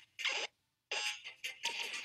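An edited-in ringing sound effect, like an alarm bell, begins about a second in. It follows a short falling sound and a brief silence.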